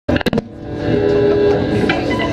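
A few sharp clicks at the very start, then a single amplified instrument note that swells in and holds steadily.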